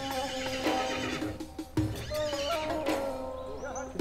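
Horses whinnying and their hooves on the ground, over a background music score of held tones, with a low thump a little before the middle.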